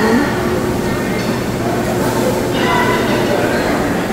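Steady room noise of a busy buffet dining hall: a constant low hum under a wash of indistinct background voices.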